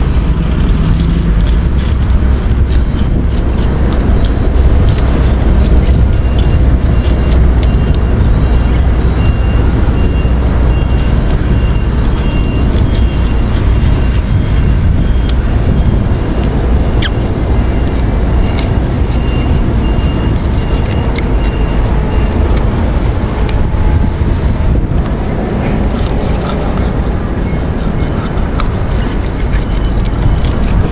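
A knife scraping and cutting a small mullet as it is scaled and cleaned, heard as scattered short clicks and scrapes. A loud, steady low rumble runs underneath throughout.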